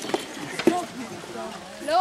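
Faint background voices with a couple of sharp knocks.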